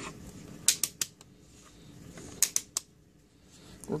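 Plastic case and flip-out stand of a handheld digital multimeter clicking and knocking on a wooden bench as it is handled. There are two short clusters of sharp clicks, about three each, the first about a second in and the second around two and a half seconds in.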